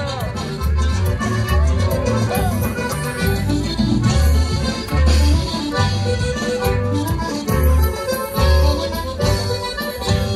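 Live accordion dance music: an accordion plays the melody over a guitar and a steady, regular bass beat.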